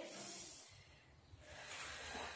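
A woman breathing audibly during a Pilates exercise: two soft, faint breaths, one just at the start and another starting about a second and a half in, following her cue to take a breath.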